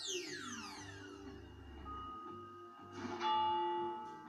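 Soft background music under animation sound effects: a falling, glittering glide in pitch over the first second or so. About three seconds in, a single bell strike rings out and hangs on, the loudest sound here.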